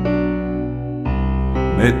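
Piano accompaniment to a slow Greek song, holding sustained chords between sung lines. A new chord with a deeper bass note comes in about a second in, and the voice starts singing again near the end.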